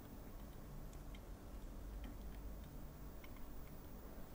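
Faint room tone: a low hum with a few scattered, irregular faint ticks.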